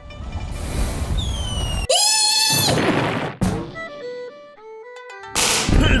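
Cartoon sound effects: a rising rush of noise with a falling whistle, then, about two seconds in, a sudden loud hit with a short high-pitched squeal. A few short music notes follow, and another loud hit comes near the end.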